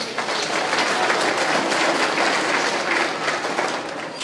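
Audience applauding: many hands clapping, swelling at once at the start and thinning out toward the end.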